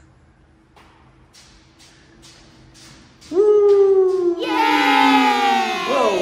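A child's kick scooter rolls over a tiled floor with faint, regular clicks. About three seconds in, a long, loud, excited squeal starts and falls slowly in pitch, and a second voice joins it partway through.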